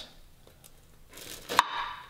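Knife handling on a sandwich and plate: a faint click, then a short scrape a little over a second in and a sharp knock just after, as a knife is pushed down through the sandwich bun.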